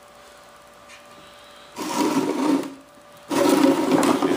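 Rectangular mold box being slid and turned on a workbench, scraping across the bench top twice, each scrape about a second long, after a quiet start.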